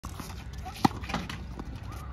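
A tennis ball struck with a racket: one sharp pock a little under a second in, followed by a softer, duller knock.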